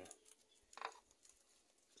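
Near silence, broken by one short faint sound just under a second in.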